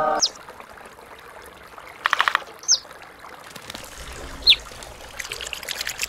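A thin stream of water trickling steadily into a fountain basin, as a cartoon sound effect. Over it come three short falling chirps and two bursts of rapid clicky chatter, one about two seconds in and one near the end.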